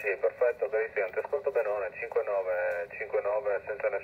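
A man speaking Italian over single-sideband radio on the 20 m band, heard through the Xiegu G90 transceiver's speaker with the thin, narrow sound of an SSB voice.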